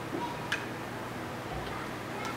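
A couple of light clicks from small nail-art tools being handled on a table, the sharper one about half a second in, over a steady background hiss.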